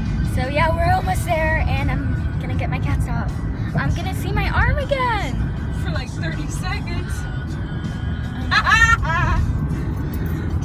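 Music playing inside a moving car over the steady low rumble of the road, with a girl's voice over it in short phrases.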